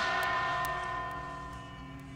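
A bell-like chime struck once, its several clear tones ringing and slowly fading, over soft instrumental background music.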